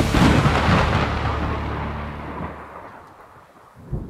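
A deep cinematic boom with a long rumbling tail that fades away over about three seconds, ending a hard-rock intro over its last held low notes. There is a short sharp knock near the end.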